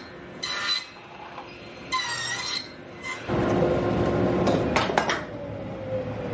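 Table saw cutting triple tenons in wood with a shop-built box joint jig. Two short cuts come first, then a longer, louder stretch of sawing with a few sharp clicks from the jig, and a tone that slowly falls near the end.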